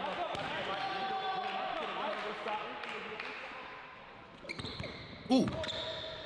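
A basketball being dribbled on a hardwood gym floor, with voices talking in the background.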